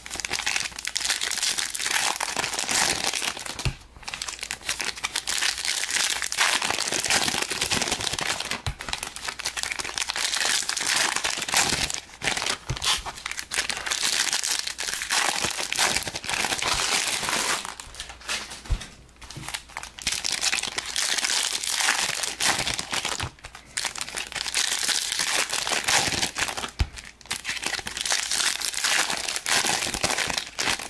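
Green foil wrappers of Panini Prizm trading-card packs crinkling loudly as they are handled and opened by hand, in a dense continuous rustle that breaks off briefly several times.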